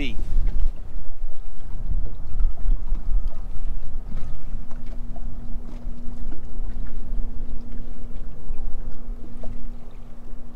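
Wind buffeting the microphone in a gusty low rumble. From about four seconds in, a steady hum holds one pitch under the wind.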